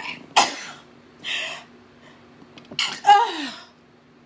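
A woman sneezing repeatedly: about five sharp bursts, the loudest about half a second in and near the end. The last one trails off in a falling voiced sound.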